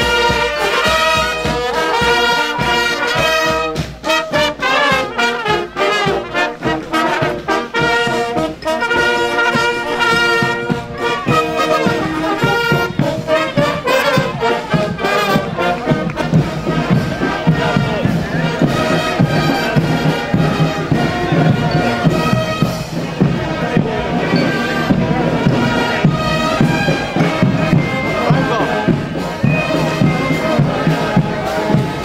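Military marching band playing a march on trumpets, tubas and drums, with regular drum beats under the brass. About halfway through, the band is partly covered by applause and crowd voices.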